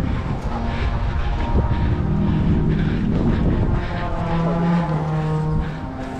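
Drum corps brass section playing long held chords, heard close up from among the baritones and trombones, with a heavy low rumble on the microphone underneath. The sound eases off a little near the end.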